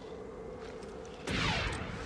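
Animated sci-fi blaster fire: a low steady hum, then about a second in a sudden loud volley of shots with sweeping zaps.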